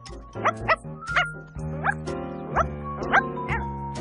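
Cartoon puppy yipping, about seven short rising yips over light background music.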